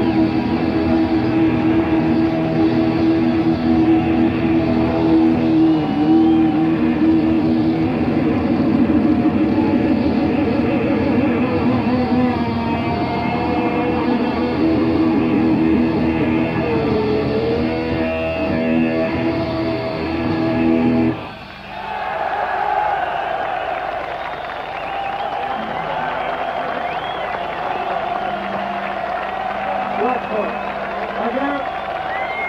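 A live rock band of electric guitars, bass and drums plays a song's closing section, then stops abruptly about two-thirds of the way through. A crowd cheers after the music stops.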